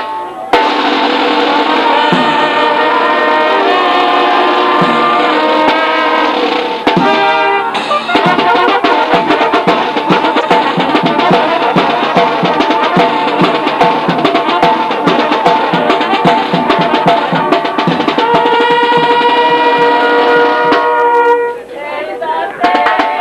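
A live brass band playing, with trumpets carrying held melody notes over a steady drum beat. The music dips briefly about seven seconds in and again near the end.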